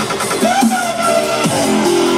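Dubstep played loud over a festival sound system, heard from within the crowd, with swooping, bending synth lines over a steady bass.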